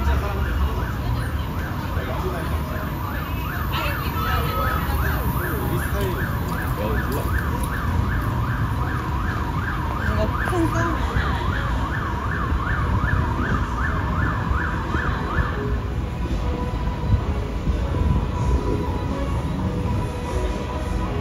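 Emergency-vehicle siren sounding in a fast yelp, about three quick rising-and-falling sweeps a second, that cuts off about three-quarters of the way through, over a steady low rumble of street traffic.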